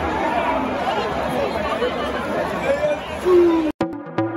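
Stadium crowd chatter, many voices talking at once, with a brief loud held tone near the end. The sound cuts off suddenly and electronic music begins just before the end.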